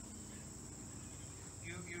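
Crickets chirping in a steady, high-pitched chorus that runs on unbroken through a pause in speech.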